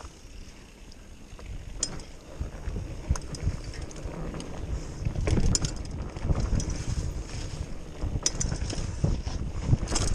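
Mountain bike riding a dirt singletrack trail: wind buffets the microphone and the tyres rumble over the dirt, with scattered sharp clicks and rattles from the bike over bumps.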